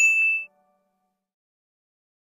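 A single bright ding from a cartoon sound effect, struck at once and ringing for about half a second before it cuts off suddenly.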